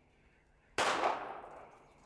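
A single pistol shot about a second in, sudden and loud, its echo dying away over about a second.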